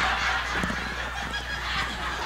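Theatre audience laughing, the laughter dying down over the couple of seconds.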